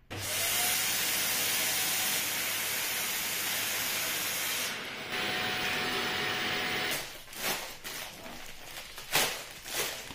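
Vacuum cleaner running with its wand in the valve of a plastic vacuum storage bag, sucking the air out of the bag of jackets in a steady rush, cut off about seven seconds in. After that, the flattened plastic bag rustles and crinkles as it is smoothed by hand.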